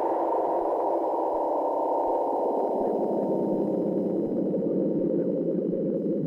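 Electronic ambient music: a sustained synthesizer pad that slowly grows duller as its bright upper range closes down.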